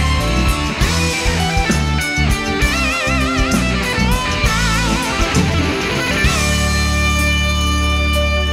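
Live rock band playing an instrumental passage without vocals: an electric guitar lead on held notes with wide vibrato over bass and drums, settling into a sustained held chord about six seconds in.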